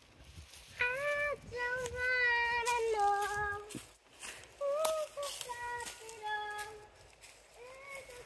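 A child singing two short phrases of held notes, each stepping down in pitch.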